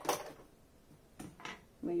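A sharp click, then faint handling sounds of hands working at a sewing machine while it is being threaded. The machine is not running.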